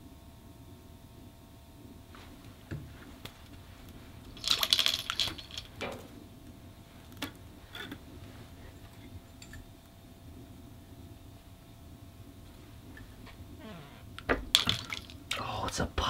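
Brief splashes and trickles of water in an ice-fishing hole as a baited line is dropped in, a short flurry about four and a half seconds in and another near the end, over a faint steady hum.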